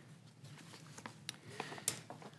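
Quiet room tone with a few faint scattered clicks and taps, the sharpest one near the end.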